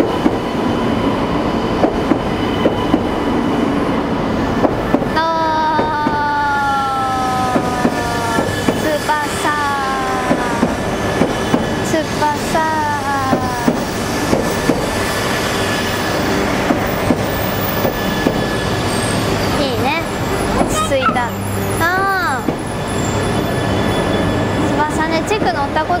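Shinkansen bullet trains moving along the platform, with steady running noise. Several electric whining tones glide downward in pitch from about a quarter of the way in, and near the end further whines rise and fall.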